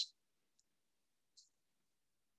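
Near silence, broken only by two faint, short high clicks, about half a second and a second and a half in.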